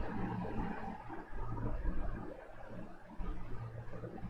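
Low rumbling ambient drone from the anime film's soundtrack, swelling and fading: louder about a second in, softer in the middle, and rising again near the end.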